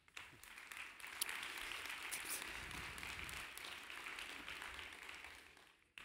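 Audience applause, building over the first second, holding steady, and dying away near the end.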